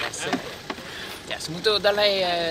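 A person's voice: short scraps of talk early on, then louder voiced speech in the last half-second.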